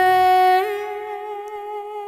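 A woman's voice holding one long sung note, its pitch stepping up slightly about half a second in and then going on more softly.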